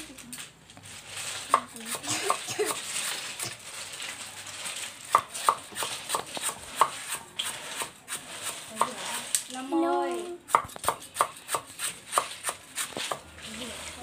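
A kitchen knife chopping lemongrass on a round wooden chopping board: irregular sharp knocks, with voices in the background briefly about two-thirds through.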